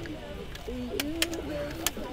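Indistinct chatter of several voices, with a few sharp clicks.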